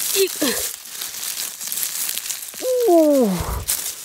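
Dry leaf litter crackling and rustling as a gloved hand digs into the forest floor and pulls up a bolete mushroom. A woman's long falling "ooh" about three seconds in is the loudest sound.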